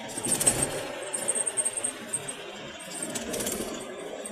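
Car driving over a flyover, heard from inside the cabin: road and engine noise with quick clicks and rattles, louder in the first couple of seconds.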